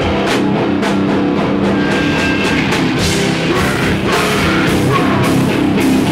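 Live doom metal band playing loudly: electric guitars and a drum kit, with the drums and cymbals growing busier about halfway through.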